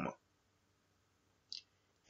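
Near silence in a pause between spoken sentences, broken once by a short, faint click about a second and a half in.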